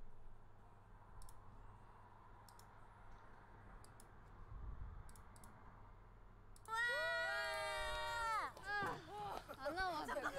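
A few faint computer clicks over a quiet room, then, about two-thirds of the way in, a high-pitched voice starts up from the video's own sound, held for a moment and then sliding down in short pieces.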